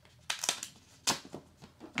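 Dye-sublimation photo paper being folded back and forth along its perforated tear-off edge strip, giving a few short, sharp crackles as the crease is made, the loudest about a second in.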